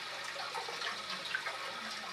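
Faint, steady trickle of water circulating in an aquarium.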